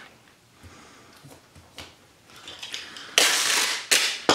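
Packing tape pulled off its roll with a loud rasping rip lasting under a second, about three seconds in, after a few faint handling clicks.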